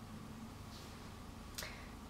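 Quiet room tone with a faint steady low hum, broken by a single short, sharp click about one and a half seconds in.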